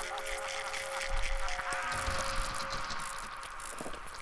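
Sound design for a logo intro: a few held tones that fade out about halfway, over a hissing, buzzing texture that swells in the middle and dies down toward the end.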